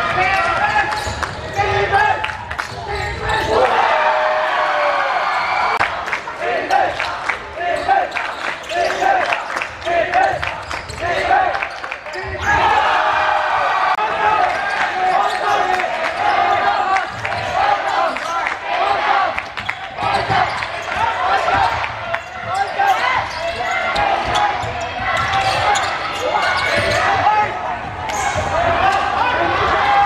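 A basketball bouncing on a wooden indoor court during a game, with irregular knocks of play and voices calling throughout.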